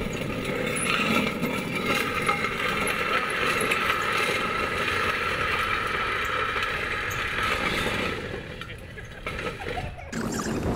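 Pedal big-wheel trikes racing on asphalt: their hard rear rollers grind and scrape steadily on the road surface. The sound dies down about eight seconds in as the trikes come to a stop.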